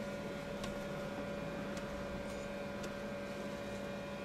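Steady faint hum with an even hiss and a few very faint ticks, heard inside a parked car's cabin; no speech.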